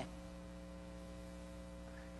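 Steady electrical mains hum, several fixed tones over a faint even hiss, with no other sound.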